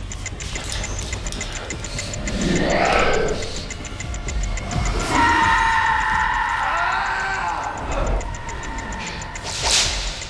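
Horror-film soundtrack: a tense music score under a man's drawn-out scream of pain as he cuts into his own eye with a scalpel. A sharp whoosh comes near the end.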